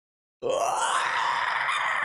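A man's long, strained, breathy groan of laughter, starting about half a second in after a moment of silence and held until the end.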